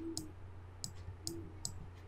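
Computer mouse clicking: about four short, sharp clicks spread across two seconds, over a steady low hum.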